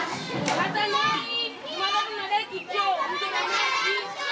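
Many children's voices talking and calling out at once, an overlapping hubbub of schoolchildren with no single voice standing out.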